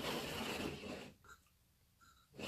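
A man draws a breath in sharply through the nose, a rush of air lasting about a second.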